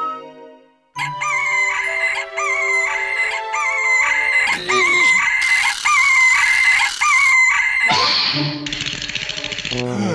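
Cartoon rooster crowing over and over, a run of repeated high calls that each end in an upward hook, starting about a second in after a short silence, with music underneath. A harsher, noisy squawk-like burst comes near the end.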